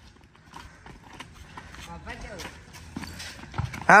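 Footsteps of several children running on a packed dirt street, as scattered quick knocks, with faint voices in the distance.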